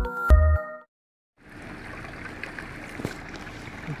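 The last chiming notes of a station jingle, a short gap, then a steady rush of floodwater running across a street from a burst pipe.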